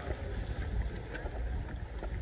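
Wind buffeting the microphone, a fluctuating low rumble, with a couple of faint taps of footsteps on a wooden boardwalk.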